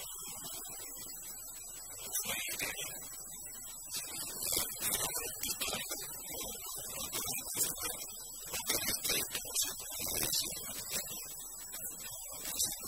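Speech from an off-camera interviewer putting a question, with a faint steady high-pitched whine running underneath.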